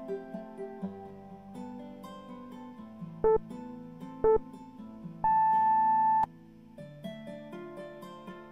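Background music of a plucked acoustic guitar. Over it, about three seconds in, an interval timer gives two short beeps a second apart and then one long beep of about a second, marking the end of a work interval.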